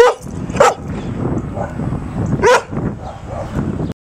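A dog giving three short, sharp barks: two close together at the start and one more about two and a half seconds in.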